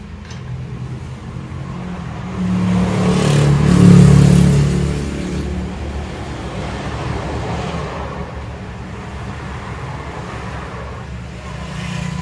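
A passing road vehicle over a steady low rumble: the engine noise swells to its loudest about four seconds in, then fades back.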